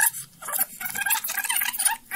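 Reel-to-reel studio tape machine spooling tape at high speed, with the recording on it heard past the heads as a rapid, high-pitched chattering of sped-up speech. There is a click as it starts.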